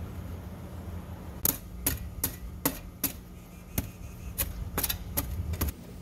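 A steel shovel blade striking and chopping into hard, stony clay: about a dozen short, sharp scraping clicks, two or three a second, starting about a second and a half in and stopping shortly before the end.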